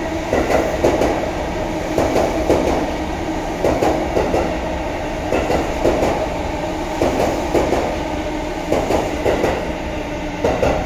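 E233 series electric train passing through a station without stopping, its wheels clattering over rail joints. The clicks come in clusters about every one and a half seconds over a steady running rumble.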